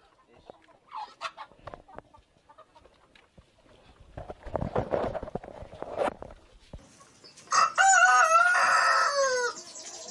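A rooster crowing once, a pitched call of about two seconds near the end. Before it come a few seconds of scraping and rustling.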